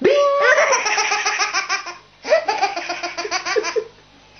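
A baby laughing hard in two long bursts of rapid, pulsing belly laughs, with a short breath-pause about two seconds in. The first burst opens with a high squeal.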